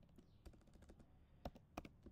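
Faint, scattered keystrokes on a computer keyboard: a few light clicks early on, then a clearer cluster of three or four about one and a half seconds in.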